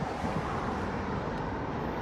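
Steady city street noise with traffic, and an irregular low rumble on the microphone.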